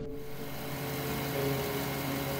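Car engine running steadily at idle: a constant hum with a few steady low tones, starting abruptly.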